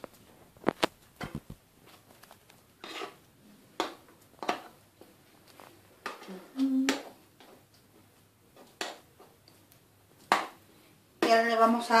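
Scattered light clinks and knocks of kitchen utensils and a metal loaf tin being handled on a counter, about a dozen separate taps with pauses between them.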